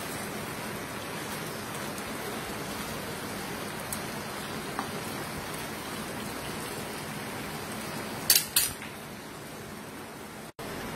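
Chicken, bacon and vegetables sizzling steadily in a pan, with a few faint clicks. Near the end, a utensil knocks sharply on the pan twice in quick succession.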